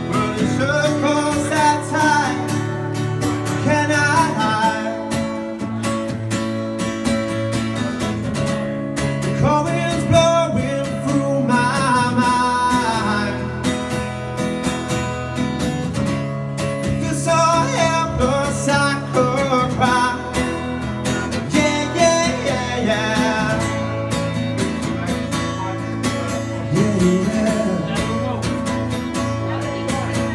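A steel-string acoustic guitar strummed steadily while a man sings phrases of a song into a microphone, a solo live performance.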